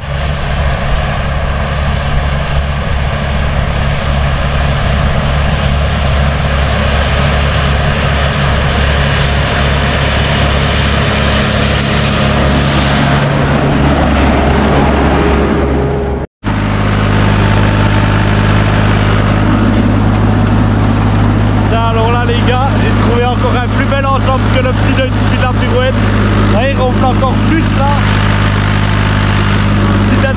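Valtra tractor engine running steadily under load while driving a Fella disc mower through standing grass. About halfway through, the sound cuts off abruptly and a different steady engine sound takes over, with a man's voice over it in the last several seconds.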